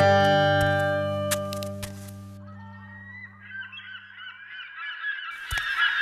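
A music cue's last sustained and plucked notes ring out and fade over the first two seconds or so. Then a flock of geese honking swells in and grows louder, with two sharp clicks near the end.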